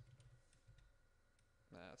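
Near silence: faint room tone with a few soft clicks at the computer as a command is entered, before a voice comes in near the end.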